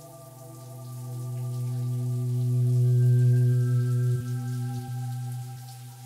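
A sustained ambient drone of several held low and mid tones swells to its loudest about three seconds in and then eases off. Beneath it runs the fainter hiss and patter of shower water spraying.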